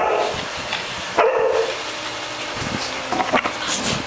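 Dogs barking in a room, one short bark about a second in and a few quicker yips and barks near the end.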